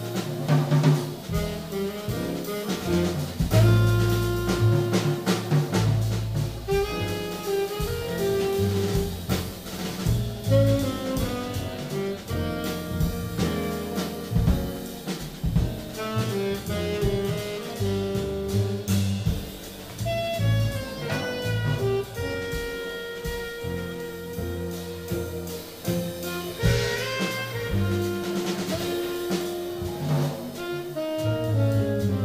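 Jazz quartet playing live: saxophone melody over piano, upright double bass and drum kit.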